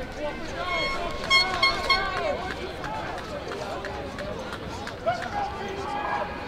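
Several people talking and calling out over one another. About a second in, a high pitched tone sounds in short pulses for roughly a second.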